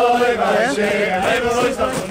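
A group of men singing a repetitive Hasidic dance tune together, loud and unbroken.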